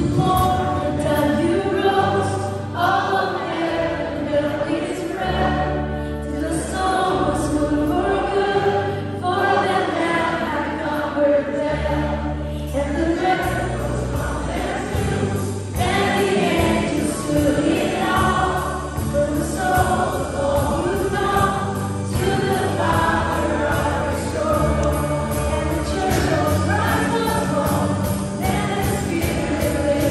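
Live worship band playing a song: a man singing lead over acoustic guitar, violin, drum kit and bass guitar, with a steady bass line moving through long held notes.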